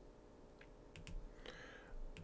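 A few faint computer mouse clicks about a second in, over quiet room tone, as a font is picked from a drop-down list.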